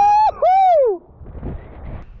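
A loud two-note whoop of 'woo-hoo' from a person: a high note that rises and holds, then a second note that slides down, about a second in all. A quiet rushing noise follows.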